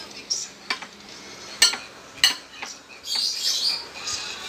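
Metal spoon clinking and scraping on a ceramic plate of rice, five or so sharp clinks spread over the first three seconds. Near the end a louder, higher, hissing stretch takes over for about a second.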